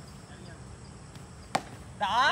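A cricket bat striking the ball once, a single sharp crack about one and a half seconds in.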